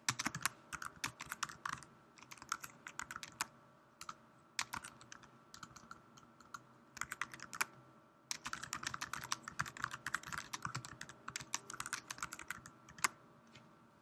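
Typing on a computer keyboard: quick runs of keystrokes broken by short pauses, with the longest, densest run in the second half.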